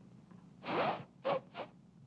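A failed attempt at a finger whistle: three rushes of breath blown through the fingers. The first is the longest and carries only a faint rising squeak, and the next two are short puffs, with no clear whistle note.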